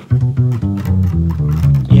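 Five-string electric bass played fingerstyle: a quick B minor scale run of about ten short plucked notes.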